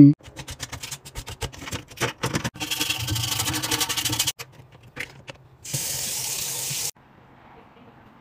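Scrubbing and scraping on a paint-spattered stainless-steel sink, then water from the tap running into the sink for about a second and a half, and later a shorter burst of hiss that starts and stops sharply.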